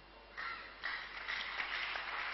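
Congregation breaking into applause about half a second in, building to steady clapping.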